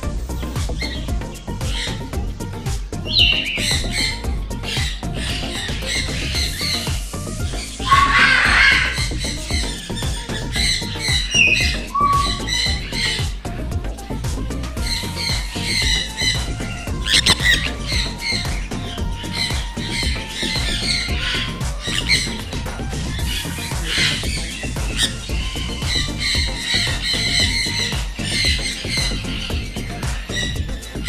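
Sun conures squawking, with harsh loud calls about eight seconds in and again midway, over background music.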